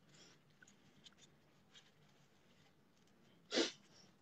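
A woman's single short, sharp burst of breath through the nose about three and a half seconds in, after a quiet stretch with only faint small noises.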